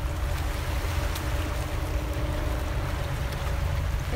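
Wind rumbling on the microphone over the wash of lake water on a pebble shore, with a faint steady hum running underneath.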